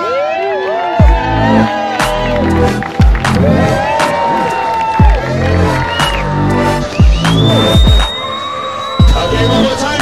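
Music with a deep bass thump about every two seconds and sung vocals, with a crowd cheering over it.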